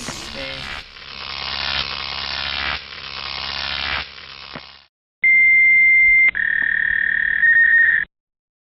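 Harsh electronic hiss with a faint sweeping ripple for nearly five seconds, then after a short break a loud steady electronic beep tone that steps down in pitch about a second later and rises slightly again near the end.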